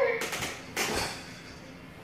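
A baby's babbling voice breaks off, then a few light knocks and a dull thump about a second in as the baby falls backwards onto a wooden floor.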